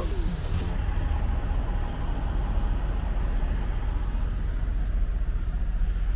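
Diesel semi-truck engine idling, a steady low rumble heard from inside the truck's cab, with a short hiss in the first second.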